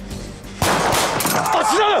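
Background music, then about half a second in a sudden loud pistol shot cuts the music off. A man's voice follows, crying out.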